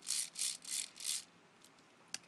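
Four short scratchy rubbing sounds in quick succession, about three a second, each a brief high hiss.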